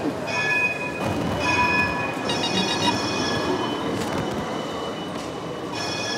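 Door intercom panel sounding its ringing tone after a call button is pressed: a high electronic tone in several short bursts, one of them warbling quickly, with a last burst starting near the end.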